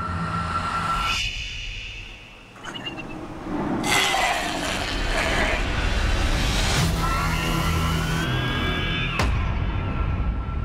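Film trailer soundtrack: music with sound effects. It thins out and dips quieter about two seconds in, a sudden loud burst of noise hits about four seconds in, and a rising tone near the end cuts off sharply.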